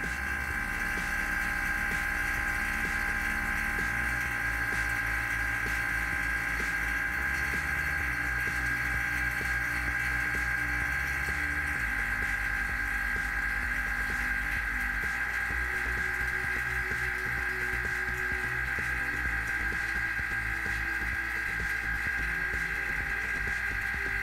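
Vacuum pump motor running steadily while it pumps down the chamber, a constant drone with a prominent high whine.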